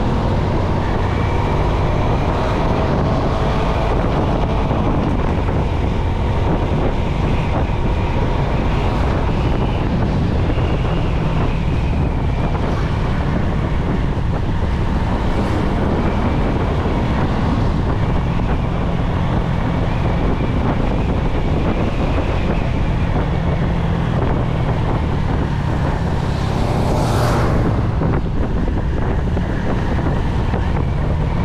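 Wind buffeting the microphone while riding a 2005 Honda Future Neo underbone motorcycle at steady road speed, with the small engine and tyre noise running evenly beneath it. A brief louder rush comes about three seconds before the end.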